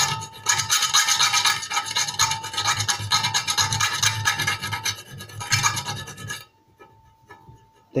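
Small round hand file rasping in quick strokes around the edge of a drilled hole in thin sheet metal, deburring the leftover metal; the filing stops about six and a half seconds in.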